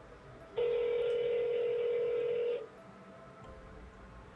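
Telephone ringback tone on an outgoing call: one steady beep lasting about two seconds, starting about half a second in and cutting off sharply, meaning the dialled number is ringing and has not been answered.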